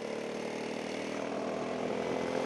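Go-kart engine running steadily at an even pitch as the kart drives around the track, with road and wind noise under it.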